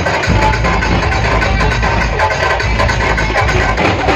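Loud music with heavy bass played through a large outdoor DJ speaker system.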